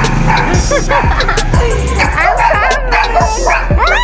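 Small dog whining and yipping in short rising-and-falling cries, coming thicker toward the end, over background music.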